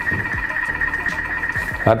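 Vorwerk Thermomix running on reverse at gentle stir speed while heating spaghetti in water at 100 °C: a steady high-pitched whine over a low rumble.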